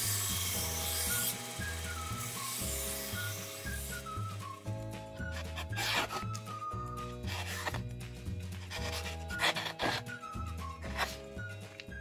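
Background music with a melody and a repeating bass line throughout. Over it, for the first four seconds or so, a belt grinder hisses as a meat cleaver's edge is sharpened on the belt. Later come several short rasps as the freshly sharpened blade slices through a sheet of paper to test the edge.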